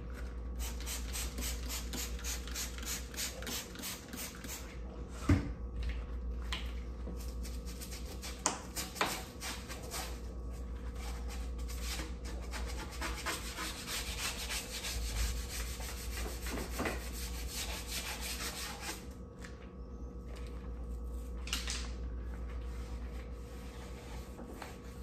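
A small bristle scrub brush scrubbing a baseboard and tile floor edge in quick back-and-forth strokes, in two long spells with a pause between. A single sharp knock about five seconds in.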